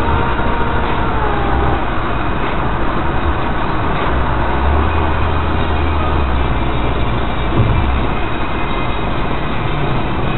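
Road noise from a car driving at highway speed, heard from inside the cabin: a steady rush of tyre and wind noise with a low rumble that swells and eases. A thin steady whine sits on top and fades out about two seconds in.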